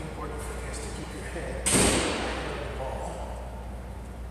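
A single sharp bang about one and a half seconds in, echoing in a large hall and dying away over about a second.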